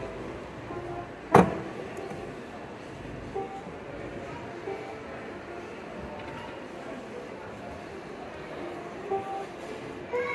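A few isolated soft upright piano notes over the background of a large, busy museum hall, with one sharp knock about a second and a half in, the loudest sound. Denser piano playing starts again at the very end.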